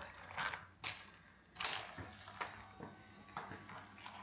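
Metal spoon stirring ice cubes, fruit and jelly in strawberry milk and Sprite in a glass bowl: a few irregular clinks and sloshing strokes.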